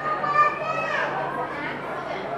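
A young child's high voice calling out, falling in pitch about a second in, over the chatter of other children.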